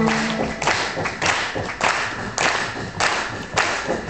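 Steady hand clapping keeps a rhythmic beat, about one clap every 0.6 seconds. A held chord of cello and voice dies away about half a second in.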